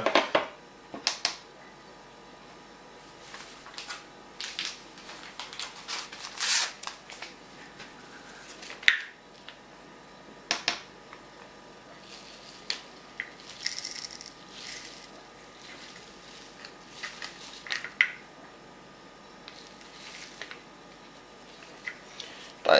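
Scattered light clicks, scrapes and rustles of small handling as yeast nutrient powder is weighed out on a scale, spaced a second or two apart.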